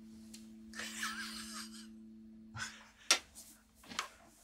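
Electric guitar strings ringing on by sympathetic resonance through the amp, a faint steady two-note tone that fades out about two and a half seconds in. A breathy laugh comes in the middle, and two short clicks come near the end.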